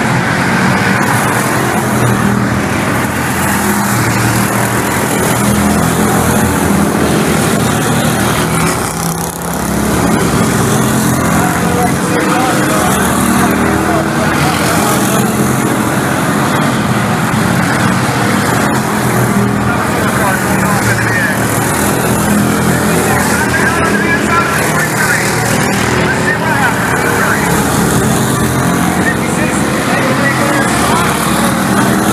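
A field of Bomber-class stock cars racing around an oval, their engines running hard in a loud, steady din. The sound dips briefly about nine seconds in.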